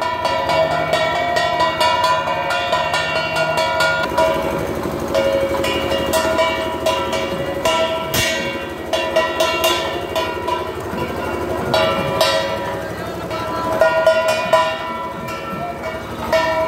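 Procession music with rapid, continuous drumming and metallic percussion strikes under a sustained wind-instrument melody, with crowd voices mixed in.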